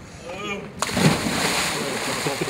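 A person in a life vest dropping off a quay into the sea: a sudden heavy splash a little under a second in, then the rush of churning water.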